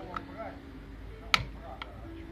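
Piezo igniter on a gas burner's control valve clicking three times, the loudest about halfway through, sparking to light the pilot flame.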